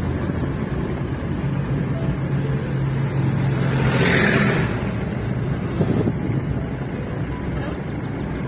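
Car engine running steadily, heard from inside the cabin while driving, with a brief rush of noise about halfway through as a loaded tractor trolley passes close alongside.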